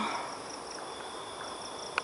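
Steady, high-pitched chorus of night insects: several unbroken tones layered together, continuing without a break.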